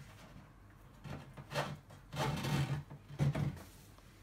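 A wooden shelf being slid into a cabinet's frame: a few short bursts of wood rubbing and scraping on wood.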